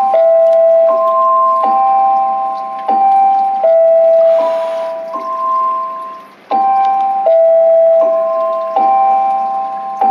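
Alarm on a mobile device's clock app going off at 20:00, ringing a loud chiming melody of held bell-like notes, a new note about every three-quarters of a second, the phrase repeating about every seven seconds.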